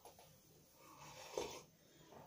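Faint sounds of a man drinking coffee from a mug, a sip and a swallow with breathing, with one short louder sound about halfway through.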